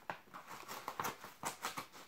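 A quick run of soft, irregular clicks and taps, about five a second.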